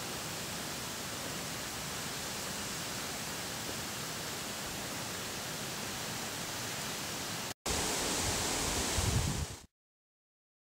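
Steady, even hiss of outdoor background noise with no distinct events. About seven and a half seconds in it cuts out for an instant, returns louder with a low rumble, then stops abruptly into silence shortly before the end.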